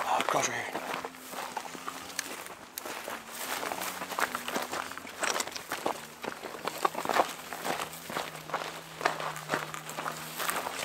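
Footsteps crunching over rocky, brushy ground at an uneven walking pace, with gear and clothing brushing along. A faint steady low hum runs underneath.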